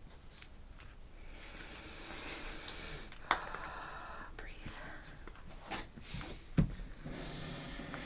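Faint rustling and scraping of foam craft pieces as string is threaded through them, with a sharp click about three seconds in and a low knock on the table between six and seven seconds.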